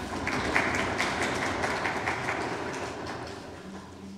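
Audience applauding: many hands clapping, loudest in the first second or two and then dying away.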